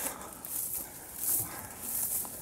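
Footsteps wading through tall grass and undergrowth, each step a swish of leaves and stems brushing against the legs, in a steady walking rhythm of about one swish every three-quarters of a second.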